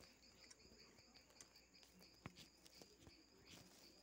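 Near silence: faint room tone with crickets chirping steadily in the background, and a faint click a little after two seconds in.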